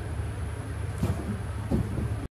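Steady low outdoor rumble, with two brief bumps about a second in and near the end.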